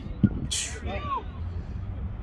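Players' calls and shouts across an outdoor football pitch, over a steady low rumble of wind on the microphone. A single sharp thump comes just after the start, followed by a brief hiss and one drawn-out shouted call about a second in.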